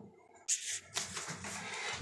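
Water spurting out of the open top of a Fluidmaster toilet fill valve, cap removed, as the supply is turned on a little to flush debris out of the valve. A sudden burst about half a second in, then a steady hiss of spraying water.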